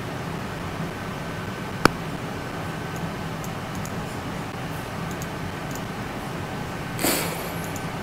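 A steady low hum in a small room, with faint clicks of a computer keyboard being typed on and one sharper click about two seconds in. A short burst of noise comes near the end.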